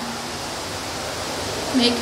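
Steady rushing noise of water, even and unbroken, with no distinct events.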